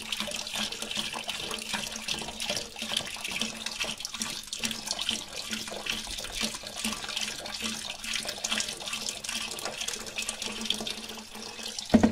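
Vegetable broth poured from a carton into a stainless steel stockpot of salsa and tomato paste, then stirred in with a spatula: steady splashing and sloshing of liquid with small scraping clicks.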